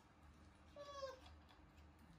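Baby macaque giving one short, high-pitched call that dips slightly in pitch at its end, about three-quarters of a second in.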